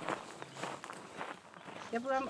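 Faint footsteps of a person walking, a few soft irregular steps.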